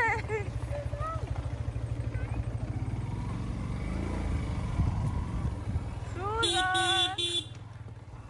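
A motorcycle engine runs with a steady low pulse on a ride along a dirt lane. Near the end a horn toots three times in quick succession, and this is the loudest sound. Children's voices are briefly heard at the start.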